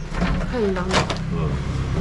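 A motor vehicle engine running steadily, growing louder a moment in, with people talking over it.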